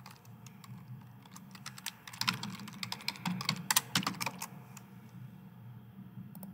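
Typing on a computer keyboard: a run of short key clicks, a few at first, then a quick dense burst through the middle, thinning out towards the end.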